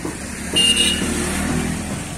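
A motor vehicle going by on the street, its engine sound coming up about half a second in and easing off near the end.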